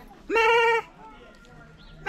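A single high-pitched bleat, about half a second long, from one of a pen of small livestock, starting about a third of a second in.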